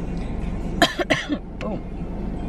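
A woman coughing, a short run of coughs about a second in, over a steady low hum.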